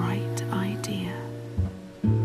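Hushed narration spoken over gentle lullaby music of slow, sustained notes.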